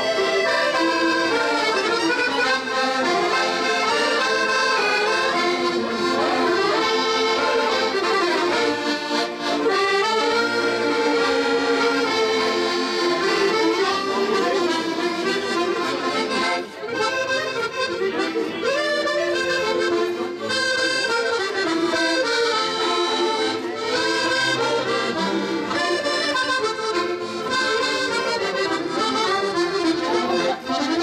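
Several accordions playing a tune together without a break.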